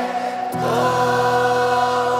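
Live Christian worship song: a group of singers holding long notes together over the band, with a new chord and deep bass coming in about half a second in.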